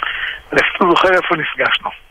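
Speech only: conversational talking in Hebrew, with a short pause near the start.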